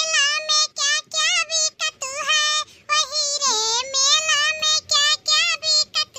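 High-pitched, pitch-shifted cartoon voice singing a song in short, quick phrases with brief breaks between them.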